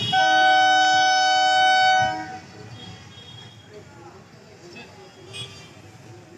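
Horn of a nine-coach electric local train sounding a warning as it approaches the level crossing: one steady blast of about two seconds with two close tones, stopping suddenly. Quieter crossing background noise follows it.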